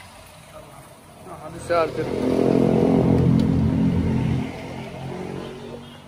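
A motor vehicle passes close by: its engine swells to a loud peak about two seconds in, holds for a couple of seconds, then fades away.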